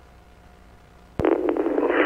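Police two-way radio channel between transmissions: a faint hiss with a faint steady tone. About a second in comes a click, then a sudden rush of radio static as the next transmission keys up.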